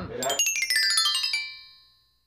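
A short rising chime flourish: a quick run of bell-like synthesized notes climbing in pitch, ringing on and fading out within about a second and a half.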